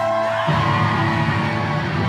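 Live rock band playing loud through a club PA. A held note rings out, then the drums, bass and electric guitars come in together about half a second in.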